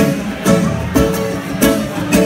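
Live instrumental samba: nylon-string acoustic guitar and cavaquinho strumming chords over a large hand drum, with accented strokes about twice a second.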